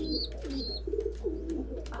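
Domestic pigeons cooing continuously in a loft, with a few short, high peeps from a young pigeon (squab) over the cooing.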